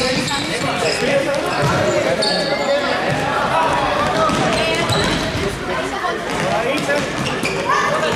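Indoor football match in a large echoing sports hall: the ball thumping off feet and the wooden floor, short high squeaks of shoes on the floor, and players' voices calling out, all ringing in the hall.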